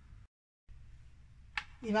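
Quiet room tone with a faint low hum, broken by a brief dead-silent gap, then a woman's voice starting again near the end.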